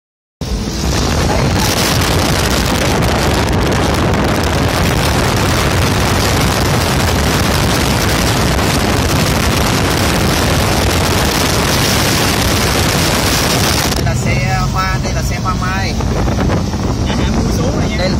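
Wind rushing over a phone's microphone in an open-top Mercedes-Benz SLK 350 at highway speed, with road and engine hum beneath. The wind rush drops away suddenly about fourteen seconds in, leaving the steady low hum of the car.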